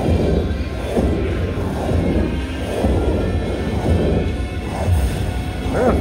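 Ultra Hot Mega Link slot machine playing its win-award music and fire effects as the bonus total counts up, with swells about once a second over a low rumble.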